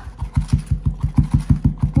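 A wooden tamper knocking rapidly into buttered biscuit crumbs in a silicone mold, about seven dull thumps a second, packing the crumbs down into a firm cheesecake base.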